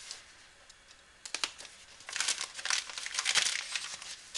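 Newspaper packing crumpling and crinkling inside a cardboard shipping box. A few crackles come about a second in, then a denser stretch of crinkling fills the second half.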